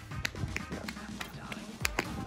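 Quick footsteps on paved ground as someone walks briskly, with music playing over them.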